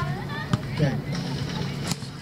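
Close talking voice over outdoor background chatter, with two sharp slaps of a volleyball being played by hand, about half a second in and near the end.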